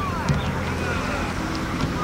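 Wind buffeting a camcorder microphone, a steady low rumble, with faint distant voices of people calling on the field.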